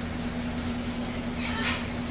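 Steady low hum with running water as a tank is filled from a hose, with a brief hiss near the end.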